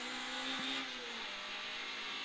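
Peugeot 106 GTi rally car's four-cylinder engine heard from inside the cabin, pulling steadily at speed with a hiss over it, and a brief dip in pitch about half a second in.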